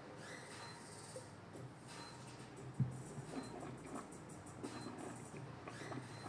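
Faint sips and slurps of white wine as it is tasted, with air drawn through the wine in the mouth a few times. A single sharp knock comes a little before the middle.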